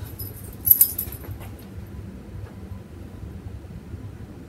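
A dog's metal chain collar jangles briefly about a second in as the dog rolls over.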